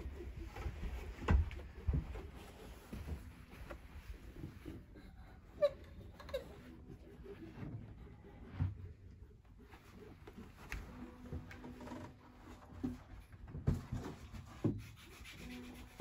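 Rubbing and handling noise with a few scattered sharp wooden knocks and brief squeaks, as the lower front board of an upright piano is worked loose and taken off.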